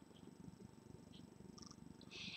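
Near silence: faint low room tone with a couple of tiny clicks.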